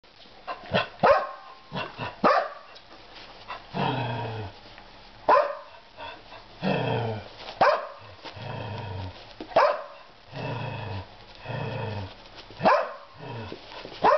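Portuguese Podengos play-fighting: drawn-out play growls of about a second each alternate with sharp barks every couple of seconds.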